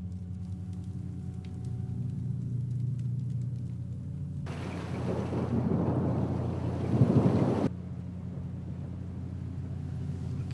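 Horror-film soundtrack: a steady low drone, joined about halfway through by a rushing swell of noise that builds, is loudest near three-quarters through, then cuts off suddenly, leaving the drone.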